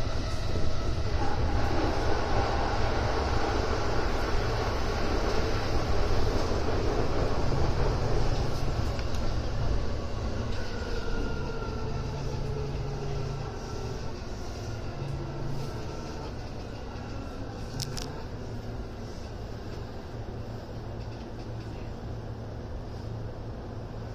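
Keihin-Tohoku Line E233-1000 series electric train heard from inside, braking into a station. A low rumble of wheels on rail is joined by a motor whine that falls in pitch as the train slows, and the whole sound grows quieter. There is one sharp click near the end.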